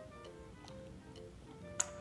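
Quiet background music with a ticking, clock-like beat of about two ticks a second under short soft notes. A single sharp click near the end.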